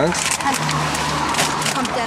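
A car passing on the road close by, a steady rush of tyre and engine noise with a low hum. Under it, the paper and plastic sacks of dog food crinkle as they are shifted in the pickup's cargo bed.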